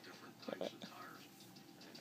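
Faint, soft murmuring voice, with one brief louder sound about half a second in.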